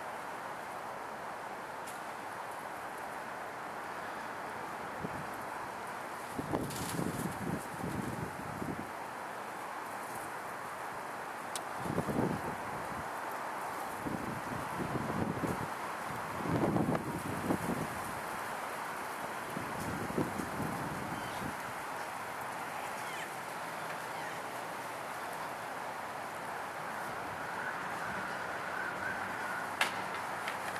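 Wind buffeting the microphone in gusts, several rough rumbles through the middle, over a steady wash of road traffic noise.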